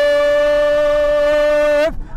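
A man's voice holding one long, steady note for about two seconds, then breaking off: the race commentator drawing out a word in a chanted, sing-song call.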